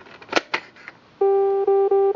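A few light plastic clicks as a hand flap of a Texas Instruments Peek-a-Boo Zoo toy is moved, then about a second in the toy's electronic sound chip starts a loud beeping tune: repeated notes on one pitch, then stepping up. The tune is the toy's reward jingle for finding the hidden animal.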